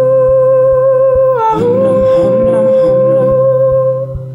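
Layered hummed vocal harmonies built up on a loop pedal, with one long hummed note held steady that bends down briefly and returns about a second and a half in, over a low rhythmic pulse.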